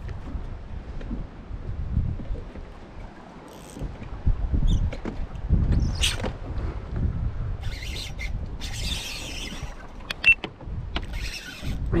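Wind rumbling on the microphone aboard a small boat on choppy water, with a sharp click about six seconds in and two short hissing bursts near the end.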